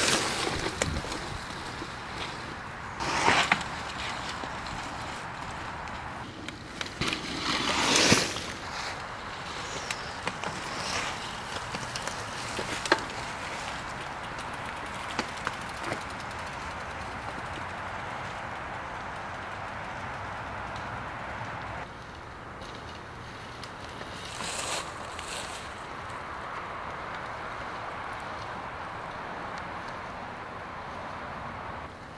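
Mountain bike tyres rolling and skidding over a dirt trail covered in dry leaves as riders pass the camera, with a few short louder rushes as a bike comes close, over a steady outdoor hiss.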